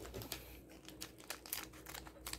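Faint crinkling of a small aluminium-foil seasoning sachet handled between the fingers, with a string of small, light ticks.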